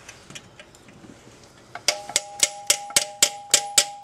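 Socket ratchet clicking in even strokes as bolts inside a manual transmission's bellhousing are snugged down evenly. After a quiet start, about four sharp metallic clicks a second come in roughly two seconds in, with a ringing metal tone under them.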